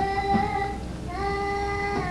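A woman's voice singing long held notes without words: one note held, breaking off a little before a second in, then another note held steadily.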